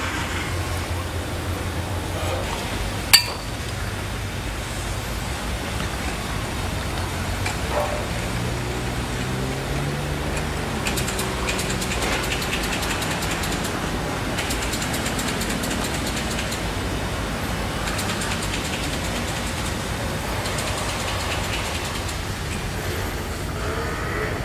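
Steady street traffic noise with vehicles running past, and a slow rise and fall in pitch in the middle as one goes by. A single sharp click about three seconds in is the loudest sound.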